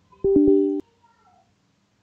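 A brief flat-pitched tone, a few notes entering in quick succession and held for about half a second, then cut off abruptly.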